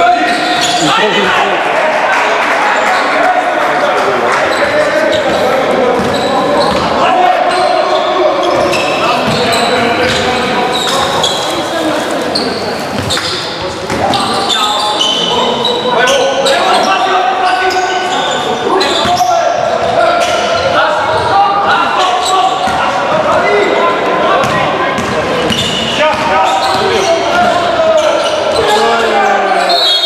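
Basketball game sound in a large sports hall: a ball being dribbled on the court amid continuous overlapping voices of players and spectators calling out, with the reverberation of the hall.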